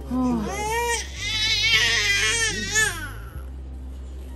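A baby crying: a short wail, then a longer, louder wavering wail that stops about three seconds in.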